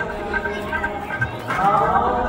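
Kirtan: a sung Sikh hymn with long held notes over steady drone tones, the pitch bending and rising about a second and a half in.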